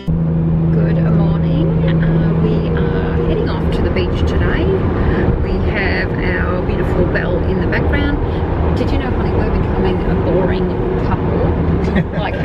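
Road and engine noise inside the cabin of a moving car: a steady rumble, with a low hum that drops away about four seconds in.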